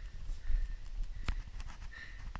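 A single sharp knock a little over a second in, followed by a few lighter clicks, over a faint low rumble.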